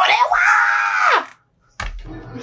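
A person's loud, high-pitched yell lasting about a second, its pitch rising and then sliding down at the end. A short thump follows near the end.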